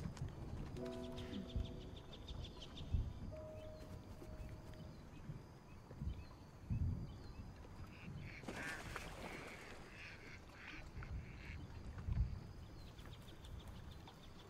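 Ducks and geese calling on a wetland, short pitched calls scattered through. There are several low thumps about three, seven and twelve seconds in, and a brief burst of rustling about eight and a half seconds in.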